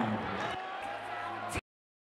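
Crowd noise from a boxing audience in a large hall, with a man's voice trailing off at the start. A click about one and a half seconds in, then the sound cuts to dead silence.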